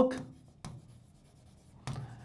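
Chalk writing on a chalkboard: faint scratching strokes with two short sharp taps, one about two-thirds of a second in and one near the end.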